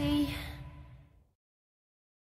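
The last held sung note of a song, with a final drum hit at the start, dying away to silence about a second in as the track ends.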